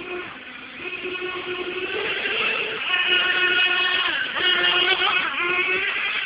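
A 1/8-scale late model RC car's motor running as the car laps a dirt oval, a steady high buzzing tone whose pitch dips and climbs again twice in the last couple of seconds as it backs off and gets back on the throttle.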